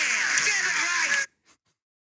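A sound-effect clip played from a phone's speaker held up to a microphone, thin and tinny with a wavering pitch, cutting off abruptly about a second in.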